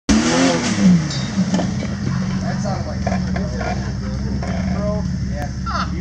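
Jeep engine running steadily at a low pitch, with people talking over it.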